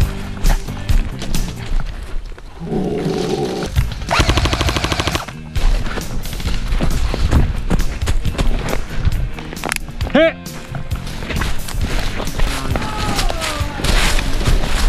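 Airsoft guns firing in a woodland game, with a rapid full-auto burst about four seconds in, amid running footsteps through dry leaf litter.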